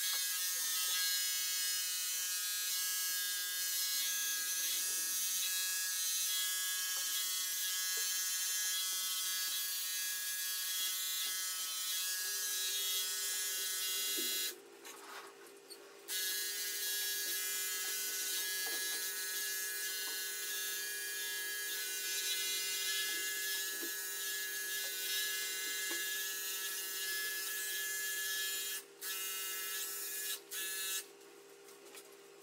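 Corded electric pet clipper running with a steady high buzz while trimming a Welsh terrier's coat. It is switched off for about a second and a half midway, then runs again, cutting out briefly a couple of times near the end.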